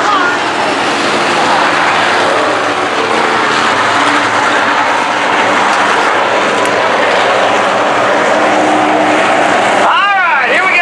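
A field of dirt-track modified race cars' engines running together as a steady, loud drone, with the engine pitch rising and falling as the cars circle the track.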